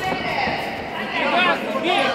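Men's voices shouting from ringside in a large sports hall.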